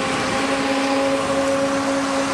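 Steady mechanical hum with a constant whine from the running motor of an aerial work platform, holding one pitch without change.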